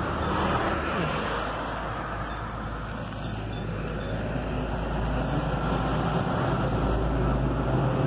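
Steady road-traffic noise with the low hum of a motor-vehicle engine running nearby, growing louder in the second half.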